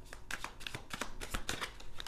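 Tarot cards being shuffled by hand: a quick, irregular run of soft card clicks and flicks.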